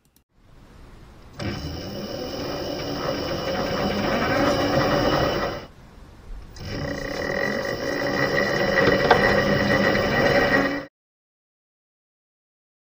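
Ryobi 40V brushless drive motor turning the tractor's belt, idler pulley and transmission pulley, a steady whine with belt noise. It runs for about four seconds, stops briefly, then runs again in reverse for about four seconds before cutting off.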